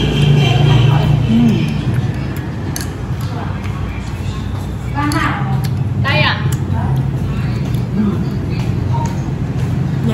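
Restaurant room sound: a steady low hum under voices, with two short voice sounds about five and six seconds in.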